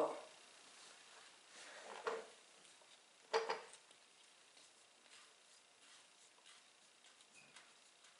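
Air rushing out of a lawn tractor tire's open valve stem as the valve core is taken out, in two short bursts about two and three and a half seconds in, the second louder.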